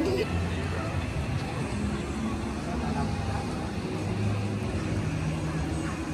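Open-air ambience: indistinct voices at a distance over a steady low rumble.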